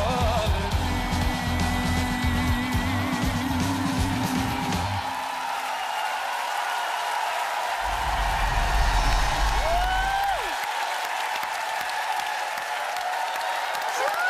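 A male singer finishing a Georgian song with band accompaniment. The band drops away partway through and comes back for a final sung note that glides up and falls off, followed by audience applause.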